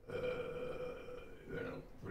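A man's voice holding one long, steady hesitation sound, then a short spoken syllable near the end.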